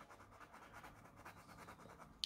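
Near silence with faint scratching of a watercolour pencil rubbed on a Caran d'Ache palette.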